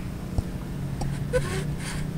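A handheld spa vacuum wand being pumped under water to suck debris off the spa floor: faint rubbing and scraping with a light knock about half a second in, over a steady low hum.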